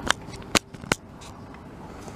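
Three sharp clicks within the first second, about half a second apart, over a steady background hiss.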